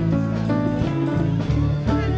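Live worship-band music: sustained bass notes and electric guitar over drums and congas, with cymbal hits.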